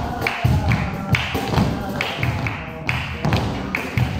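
Flamenco dancers' heeled shoes striking the floor in rhythmic footwork, about two to three strikes a second, over music.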